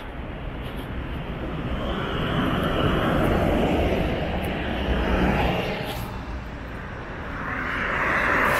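Road traffic passing close by: a continuous rush of engines and tyres from cars and a minibus, swelling a few seconds in and again near the end as vehicles go past.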